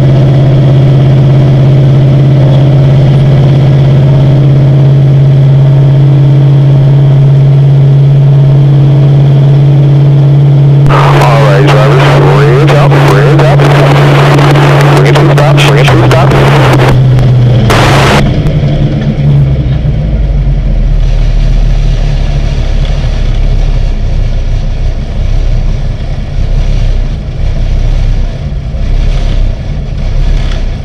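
Race car engine running at a steady high pitch, heard from inside the cockpit. After about 18 seconds it falls to a lower, uneven note as the car comes off the throttle.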